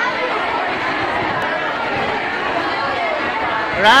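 Crowd of schoolchildren chattering in a large hall, many voices overlapping at a steady level. Right at the end a nearby voice says "All right".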